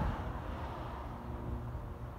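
Low, uneven rumble of outdoor background noise.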